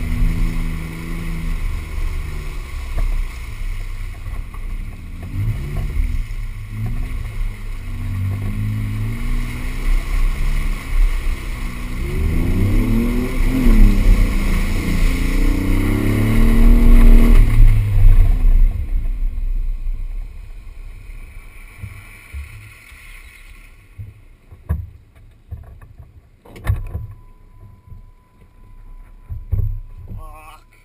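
Jeep Wrangler's engine revving and labouring as it drives through mud, the pitch rising and falling, loudest about 13 to 18 seconds in. The engine then drops away about 20 seconds in, leaving a quieter stretch with a few knocks.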